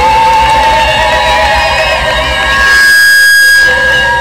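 Live Kabyle song: a group of women's voices singing with keyboard and bass guitar accompaniment. About three seconds in, a loud steady high tone is held for about a second.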